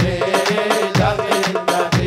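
Middle Eastern folk dance music: large double-headed tabl drums beaten with sticks, a deep stroke about once a second with lighter hits between, under an ornamented, wavering melody line.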